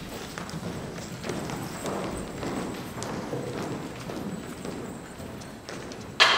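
Irregular hard knocks and taps of footsteps on a stage floor, a few per second.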